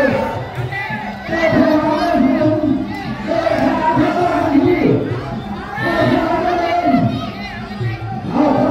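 Crowd of spectators at a Muay Thai bout shouting and cheering, rising and falling in repeated swells.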